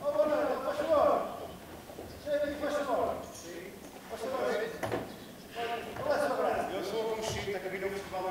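Several men's voices chattering and calling out over one another, with a couple of short knocks.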